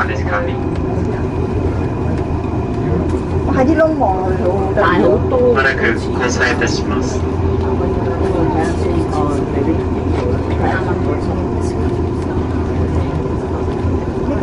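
Steady low hum of a moving aerial ropeway cabin, with a few faint steady tones running through it. Passengers' voices come in briefly now and then.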